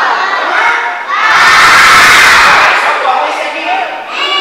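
A crowd of young children shouting and cheering together. A loud collective shout rises about a second in, holds for nearly two seconds, then fades to scattered voices.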